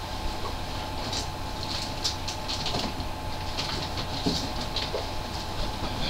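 Faint, scattered rustles and light clicks of vinyl records being handled, over a steady low hum of room or microphone noise.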